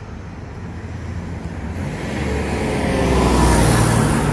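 A car driving past close by, its engine and tyre noise swelling to a peak near the end, with the pitch falling as it goes by.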